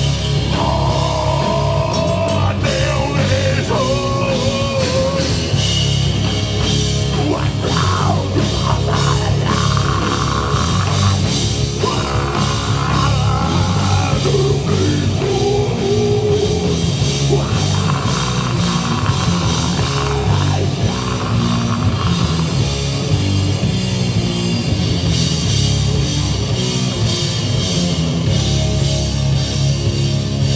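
Heavy metal band playing live and loud: distorted electric guitars, bass guitar and a drum kit, with a steady beat.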